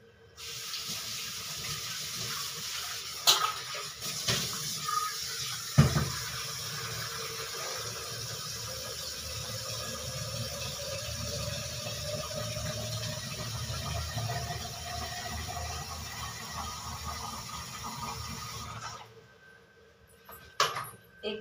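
Kitchen tap running into a steel vessel at the sink, with a few knocks against metal in the first six seconds. A faint tone rises slowly as the vessel fills, and the water cuts off shortly before the end.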